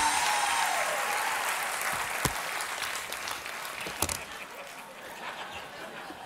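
Studio audience applauding, the applause slowly dying away, with a couple of short knocks about two and four seconds in.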